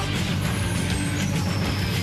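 Cartoon theme music with the melody dropped out: the bass and beat carry on under a hissing sound effect and a thin, high whistle that falls slowly in pitch. The melody comes back just after the end.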